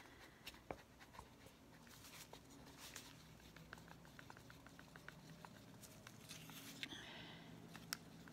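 Faint clicking and light scraping of a wooden stir stick moving through thick paint in a small plastic cup, barely above near silence.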